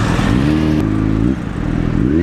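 A vehicle engine revs up, its pitch climbing quickly and then holding steady for under a second, with rushing wind noise around it at the start.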